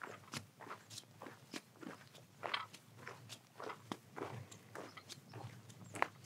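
Footsteps crunching on a sandy, gritty dirt path: a steady walking pace, about three faint crunches a second.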